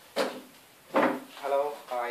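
Two loud knocks of wooden furniture, about a second apart, as a man sits down at a wooden counter.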